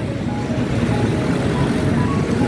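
Steady low outdoor rumble, with a few faint steady tones above it.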